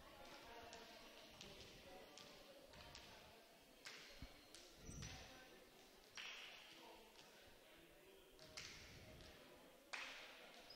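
Near silence with a handful of faint thuds of volleyballs being bumped and set by hand.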